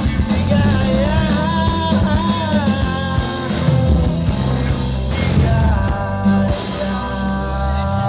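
Live rock band playing through a stage PA: electric guitars and drums, with a singing voice over the first few seconds.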